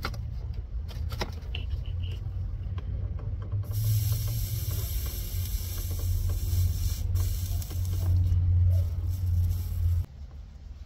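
Hot-work soldering of a battery ground cable into its corroded terminal clamp, to cure a bad ground. A steady low hum runs throughout, with a loud hiss from about four to seven seconds in.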